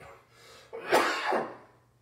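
A man coughs about a second in: one rough burst lasting under a second.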